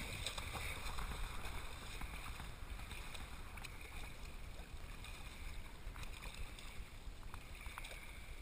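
Shallow seawater splashing and sloshing as mating nurse sharks thrash at the surface, a little louder in the first seconds, with a few short sharp ticks.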